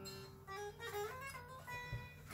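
Electric guitar played quietly: a few single notes picked one after another, some of them sliding or bending in pitch.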